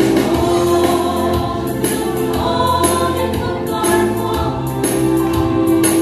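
Women's vocal group singing a Hmar gospel song in harmony, live through microphones, over instrumental accompaniment with a low bass line and a steady percussion beat.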